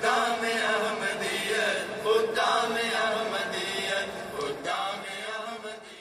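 Vocal chanting used as a soundtrack: a sung melody with held, bending notes that fades out toward the end.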